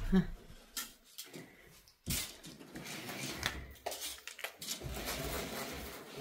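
A window roller blind being pulled down to shut out the sun. Its mechanism starts suddenly about two seconds in and rattles with small clicks for a couple of seconds before fading.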